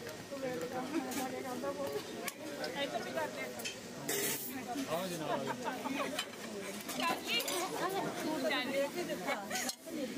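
Several people talking at once in overlapping, unclear conversation, with a short burst of hiss about four seconds in.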